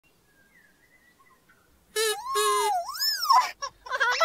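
Makka Pakka's toy trumpet making a funny noise: two short wobbly hoots about halfway in, then a rising and falling whoop. Before it, near silence with faint birdsong.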